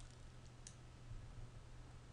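One faint computer mouse click about two-thirds of a second in, over a low steady hum; otherwise near silence.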